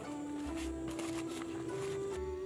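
Slow, gentle background music of held melody notes stepping from pitch to pitch, with a few soft rustles of a leaf being folded around snails.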